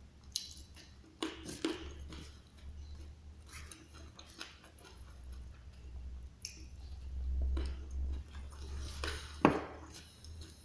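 A person eating with a spoon off a banana leaf: chewing, with sharp clicks and scrapes as the metal spoon scoops rice and raw leunca berries. The loudest click comes near the end, and a low rumble builds in the middle.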